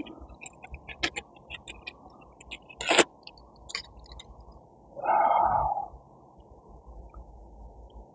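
Small clicks and rustles of mesh gauze patches and a bonsai pot being handled, with a sharper click about three seconds in. A little after five seconds comes a short breath-like sound, the loudest thing heard.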